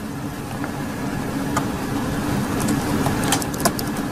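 Computer keyboard keys clicking as a word is typed, with a run of quick clicks in the second half, over a steady low hum.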